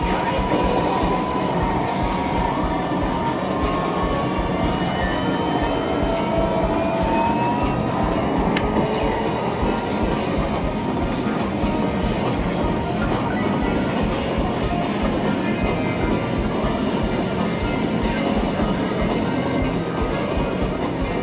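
Dense, steady din of a medal pusher game in a busy arcade: machine music and sound effects over a continuous rumble, with a few rising tones during the first eight seconds.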